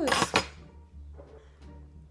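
A small metal ring-pull tin being pulled open: a short, noisy metallic rip and scrape in the first half second, then faint handling.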